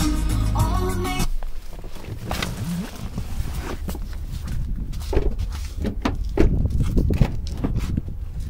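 Pop music from the car's stereo stops abruptly about a second in as the push-button start/stop is pressed. It is followed by rustling, footsteps and several clunks as someone climbs out and opens a rear door.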